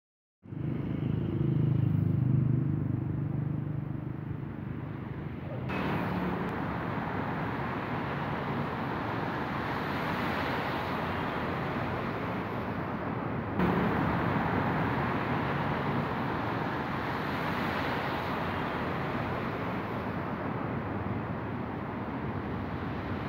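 Outdoor street ambience with traffic noise, a vehicle engine running low in the first few seconds. The background changes abruptly twice, about six and fourteen seconds in.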